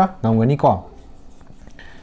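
A man's voice briefly at the start, then a felt-tip marker writing on a whiteboard, with a short high squeak near the end.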